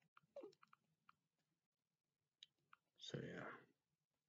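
Near silence broken by faint small mouth clicks, then a short breath-like rush of noise about three seconds in, lasting about half a second.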